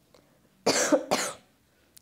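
A woman coughs once, a short two-part cough about two-thirds of a second in.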